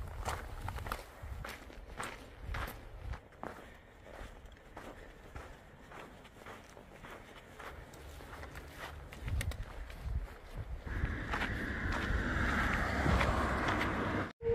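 Footsteps and trekking-pole taps crunching along a gravel and dirt trail as a backpacker walks steadily. In the last few seconds a steady rushing noise comes in under the steps.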